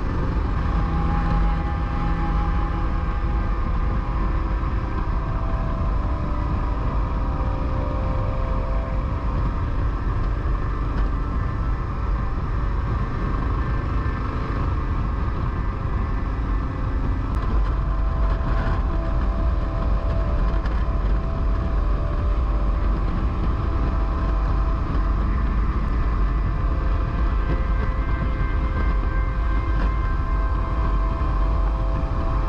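Motorcycle running at road speed, with heavy wind rush and road rumble on the bike-mounted microphone; the engine note shifts a little now and then.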